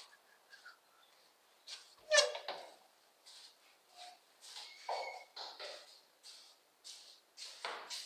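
A door hinge gives a short wavering creak about two seconds in as the restroom door swings open. Irregular footsteps and light knocks follow in the small tiled room.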